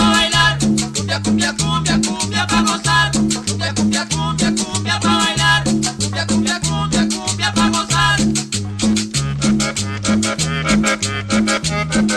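Instrumental passage of a cumbia song: a steady dance beat and a repeating bass line, with melodic instrument phrases coming and going over them.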